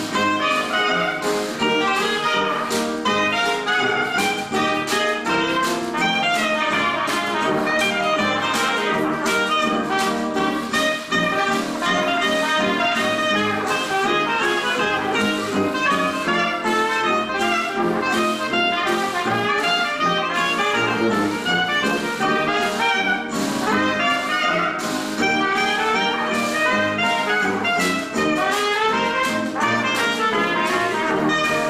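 1920s-style traditional jazz band playing live, with clarinet out front over brass, sousaphone and a steady rhythm section beat.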